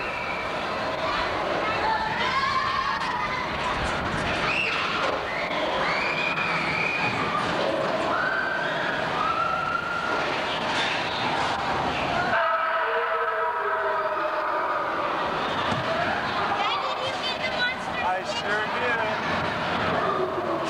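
Indistinct voices and high yells with no clear words, over a steady background noise that cuts out abruptly about twelve seconds in.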